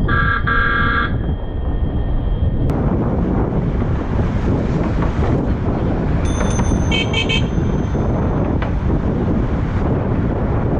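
Loud Bike Mini bicycle car horn honking in a quick run of short blasts for about a second at the start. About six seconds in comes a shorter, higher-pitched ringing signal in quick pulses, over steady wind on the microphone.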